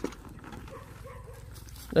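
Dogs barking faintly in the distance.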